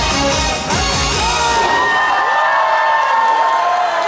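Trot song with drums ending about a second and a half in, followed by a crowd cheering and whooping.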